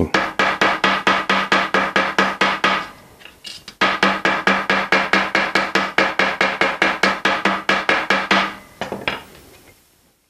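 Wooden mallet tapping a freshly annealed copper strip flat, about five quick blows a second, each with a ringing tone. There is a short break about three seconds in, and the blows thin out near the end. These mallet strokes work-harden the soft copper, stiffening it up considerably.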